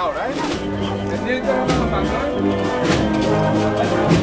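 Processional banda de música with brass and drums playing a slow marcha procesional, mixed with crowd voices.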